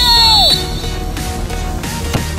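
Background music, with a shouted voice trailing off in the first half second.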